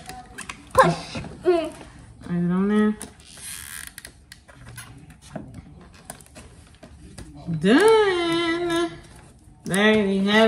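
Short wordless voice sounds, hums and murmurs; the longest lasts about a second near the end. Between them are faint clicks and rustles of hands pressing glued paper letters onto a cardboard frame.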